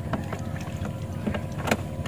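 Yamaha 8 hp Enduro two-stroke outboard motor idling steadily with a low rumble, test-run after its cooling-water pump impeller was replaced.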